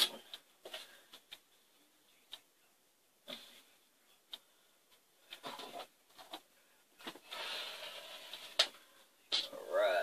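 Polyester quilt batting being handled and trimmed with a rotary cutter against a ruler on a cutting mat: scattered soft rustles and light knocks, then a longer scraping stretch about seven seconds in, ending in a sharp click.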